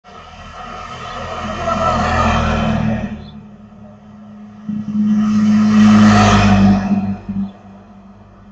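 Two long, harsh, noisy screeching calls from an unseen bird at night, each lasting two to three seconds with a short gap between, over a steady low hum from the security camera's microphone.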